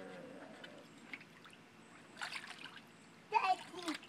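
Water splashing in a small plastic kiddie pool as a toddler moves and kicks in it: a short splash about two seconds in, then a louder one near the end together with a brief child's vocal sound.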